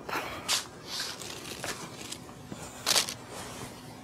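A cloth blanket being drawn up and settled over a patient on an exam table: a few short, soft rustles, the loudest about three seconds in.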